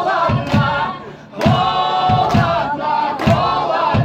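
Live band song: singing over a steady drum beat, with the band playing along. The singing and beat break off briefly about a second in, then come back in full.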